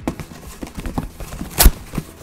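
Cardboard box being opened and rummaged through packing peanuts: a quick run of small clicks and rustles, with one sharp knock about a second and a half in.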